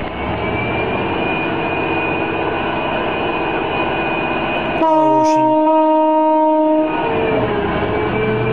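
Large Liebherr mining excavator running with a steady machine drone. About five seconds in, a loud horn sounds one blast of about two seconds.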